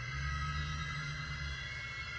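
A low, steady ambient drone with a faint high steady tone above it, unchanging through the pause.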